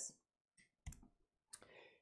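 Near silence in a pause, broken by a single short click with a low thud about a second in.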